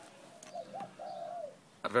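A low bird call in two or three short notes, the last one the longest.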